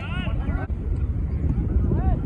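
Wind buffeting an outdoor microphone, a steady low rumble, with faint shouts of players on the field in the first moment.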